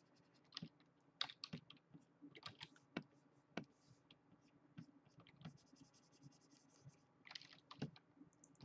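Faint, irregular clicks of computer keyboard keys, a few a second, over a low steady hum.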